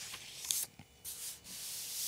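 Thin Bible pages being turned and brushed close to the microphone: paper rustling and sliding, with a sharp crackle about half a second in and a longer hissing slide near the end.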